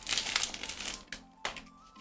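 Clear plastic packaging crinkling as a small box is handled and pulled out of it, dying away after about a second. Faint background music is left underneath.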